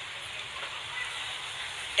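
Steady outdoor background hiss with nothing distinct standing out.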